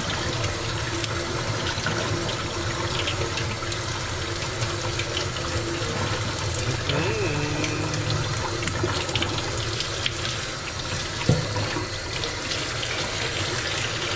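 Kitchen faucet running a steady stream into a stainless steel sink, the water splashing over a wet cotton shirt being rinsed and worked by gloved hands. One short, sharp click late on.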